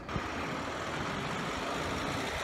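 Street traffic: a steady rumble of cars passing on the road.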